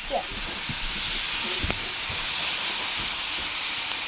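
Battery-powered toy train running on its plastic track, a steady hiss that grows a little louder after the first half second, with a few light clicks and one sharper click about halfway.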